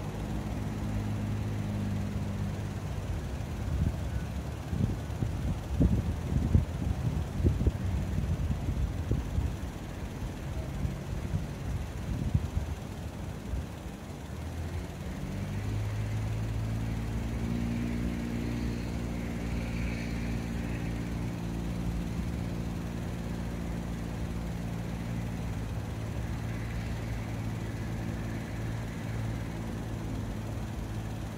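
A steady low engine drone of a vehicle idling, broken for several seconds by rough gusty noise on the microphone, then settling back into the steady idle drone for the rest of the time.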